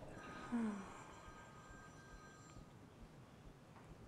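Quiet room tone in a lecture hall, with one short, low falling murmur from a person's voice about half a second in.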